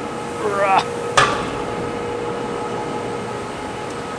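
Stainless-steel lauter tun's inspection hatch being opened: a single sharp metal clank about a second in, over a steady machinery hum.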